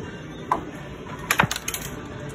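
Arcade room din with a short blip about half a second in, followed by a quick cluster of sharp clicks and knocks in the second half.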